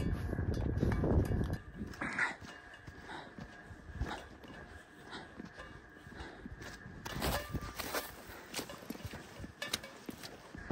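Footsteps of a hiker walking over dry, tussocky ground, with a louder low rumble in the first second and a half.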